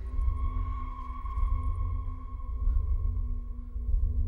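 Film score: a deep, steady rumbling drone under several long held tones.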